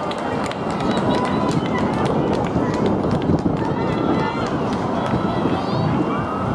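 Track-meet spectators talking and calling out indistinctly over a steady rushing background noise, with scattered sharp clicks.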